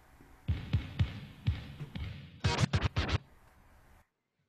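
A DJ scratching a record on a turntable: a few deep, falling thuds, then a quick run of about seven scratch strokes that stops short.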